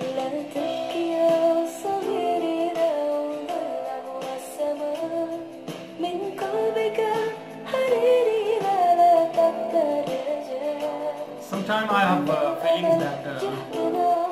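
Music: a woman singing an Arabic song with acoustic guitar accompaniment.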